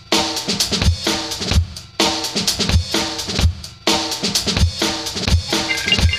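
Background music: a drum-kit track with a steady beat of kick and snare under repeating chords.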